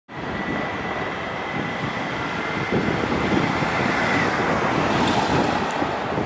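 Steady city street traffic noise with wind buffeting the microphone, and a faint high steady whine through the first four seconds.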